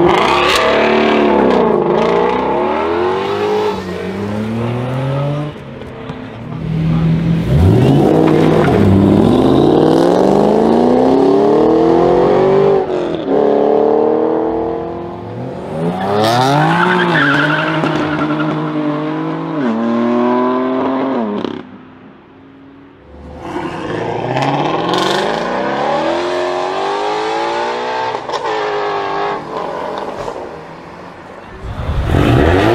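Performance car engines accelerating hard in a series of separate runs, each revving up and dropping back at every gear change. In the first few seconds a Ford Mustang pulls away at full throttle.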